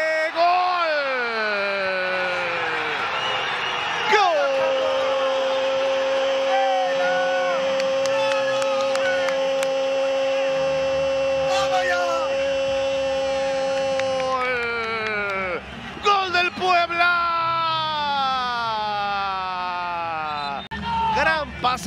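Football TV commentator's goal call: a shout falling in pitch, then one long note held for about ten seconds that slides down at the end, followed by several shorter falling shouts.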